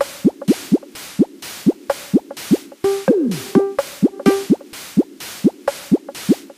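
Electronic techno track: drum-machine hi-hats ticking about four times a second under short synth blips that drop in pitch. About three seconds in, a longer falling synth sweep comes in with a few brief held synth notes.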